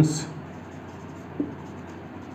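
Marker writing on a whiteboard, a faint scratching as letters are written, after the end of a spoken word at the start.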